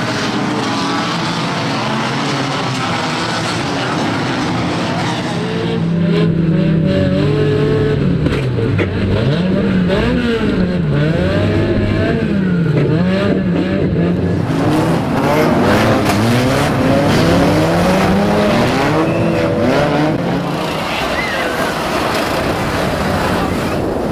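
Racing banger engines being driven hard around a track, revs repeatedly rising and falling as the cars accelerate and brake into the bends. Through the middle stretch the sound is one car's engine heard from inside its cabin, muffled and dull, still revving up and down.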